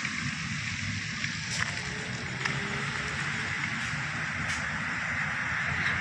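Steady rush of clean water running down the street and along the curb, spilling from a leaking municipal water pump, with a low rumble underneath.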